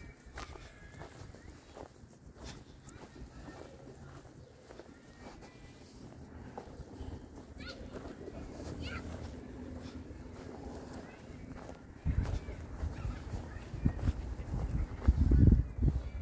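Faint distant voices of people outdoors. From about twelve seconds in, a loud low rumble on the microphone covers them.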